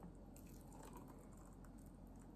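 Near silence: room tone with a few faint clicks from the plastic blender jar and its lid being handled.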